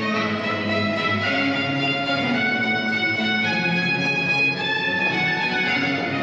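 Baroque dance music on bowed strings led by violins, a steady stream of sustained and moving notes played back over a loudspeaker.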